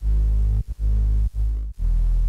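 Electronic bass synth line playing deep notes broken by a few short gaps, processed with noise, drive and bit-crush effects: the bit depth and resample rate are modulated by LFOs to give the grit some movement.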